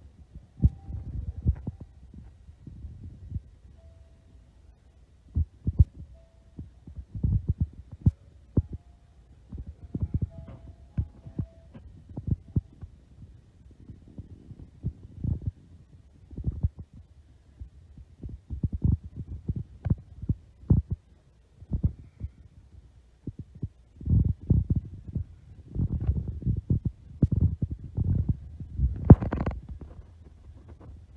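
Irregular low thumps and rumbling from a handheld phone being jostled as the person holding it walks, heavier in the last few seconds.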